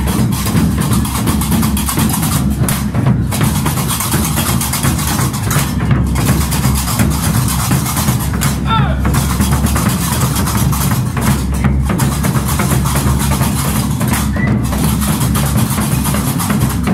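Gnawa music: large double-headed tbel drums played loudly, with a dense metallic clatter typical of qraqeb castanets and voices over it.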